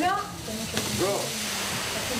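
Large clear plastic sheet crinkling as it is pulled down off a wall, with a few voices over it.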